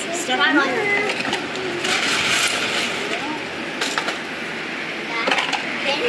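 River gravel tipped and spread across mesh sifting screens, the stones rattling and clinking, with a rush of pouring about two seconds in and sharp clicks of stones near four and five seconds. Children's voices are heard briefly.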